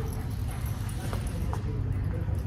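A dog's claws tapping lightly on a concrete floor as it walks at heel, a few faint clicks over a steady low hum in the hall.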